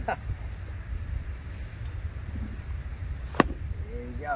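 Wind rumbling on the microphone, with a short laugh at the start and a single sharp crack about three and a half seconds in.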